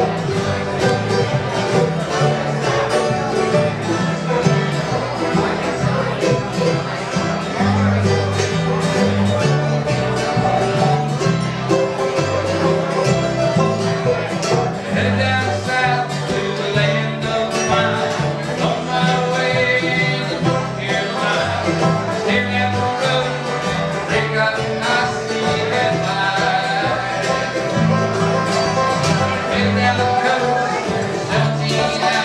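Bluegrass band playing live: banjo, mandolin and acoustic guitar together over a stepping low bass line, steady throughout.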